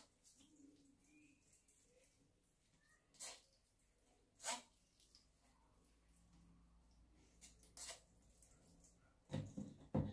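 Near silence, broken by a few short, faint scrapes of a metal spoon working fermented okra against a wire-mesh sieve, with a slightly louder cluster near the end.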